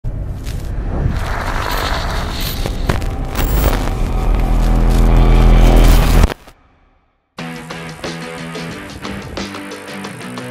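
Intro music: a loud swelling build-up with deep booms that cuts off suddenly about six seconds in, then a second of silence, then rock-style background music with a steady beat starts.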